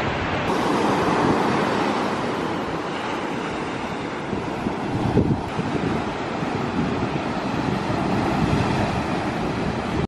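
Ocean surf breaking and washing on a beach, a steady rush with a brief swell about five seconds in, with wind on the microphone.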